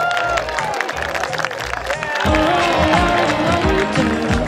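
Guests clapping and cheering over background music; the music's bass comes in stronger about halfway through.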